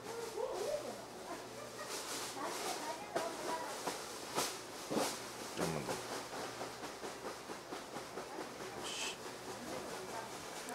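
Soft handling sounds of a metal spoon and a soy sauce bottle while soy sauce is poured into the spoon and tipped into a paper cup: a few light clicks about three to five seconds in, over low background noise.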